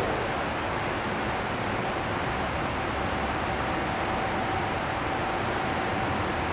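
Steady rushing air noise from the ventilation blowers that keep an air-supported dome inflated, with a faint steady whine coming in about a second and a half in.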